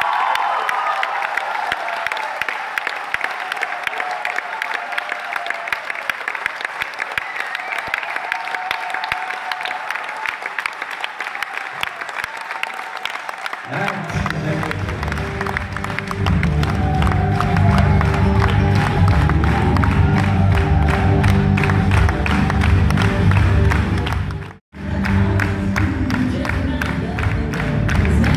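Audience applauding with dense, steady clapping. About fourteen seconds in, loud music with a heavy bass beat starts under the applause. Near the end the sound drops out for a moment.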